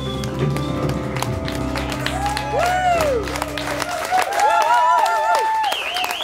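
Live rock band holding a final chord that cuts off about four seconds in, as the audience claps, cheers and whistles.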